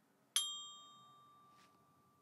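A single mallet stroke on the D bar of a student bell kit (glockenspiel), about a third of a second in, sounding a high D. The clear bell tone rings on and slowly fades away.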